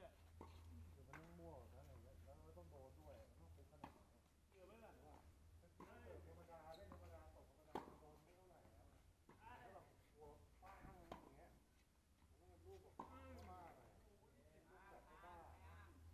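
Faint tennis ball strikes on racket strings, a sharp pop every second and a half to two seconds as a doubles rally goes on, under the faint voices of the players talking. A low steady hum runs underneath.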